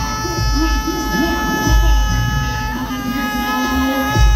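Live concert music through an arena sound system: a long held, voice-like note that shifts pitch slightly about three seconds in, over deep bass beats.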